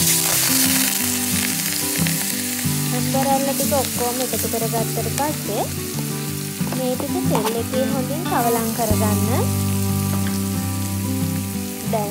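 Spice-coated ambarella pieces dropped into hot oil in an aluminium kadai. They sizzle loudly the moment they land, then keep frying with a steady crackling hiss.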